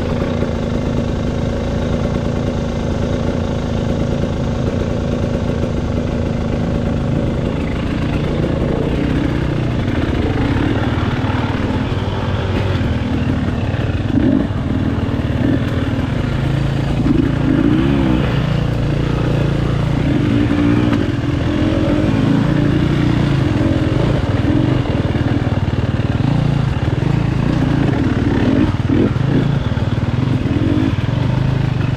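The 2022 KTM 300 XC-W's single-cylinder two-stroke engine runs at low revs while the bike is ridden slowly. It holds a steady note for the first several seconds, then keeps rising and falling in pitch as the throttle is blipped.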